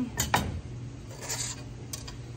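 Cast-iron bar folder clacking twice in quick succession as its folding leaf is swung back, then a brief scrape of copper sheet being slid across the steel bed, and a light click near the end.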